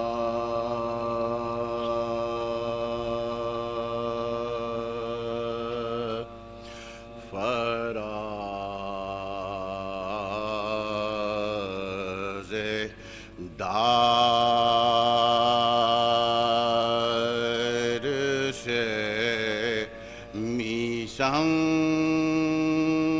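Male voices chanting soz khwani, an unaccompanied marsiya lament, in long, slow, wavering held notes. Short breaks for breath come about six, twelve and eighteen seconds in, and a new steady note begins near the end.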